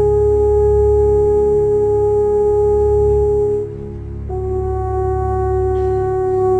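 Symphony orchestra playing long sustained notes, with brass, most likely French horns, holding one note for about three and a half seconds. After a brief break a second long note comes in slightly lower.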